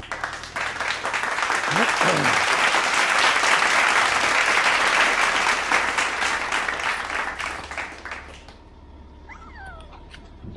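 Handling noise: a work glove and clothing rubbing and scraping against the camera's microphone, a loud crackly rustle that fades away about eight seconds in, with a brief squeak near the end.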